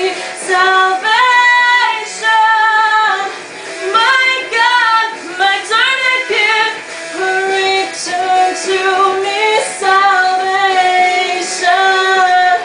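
A young woman singing a rock song, a line of long held notes that slide up and down between pitches.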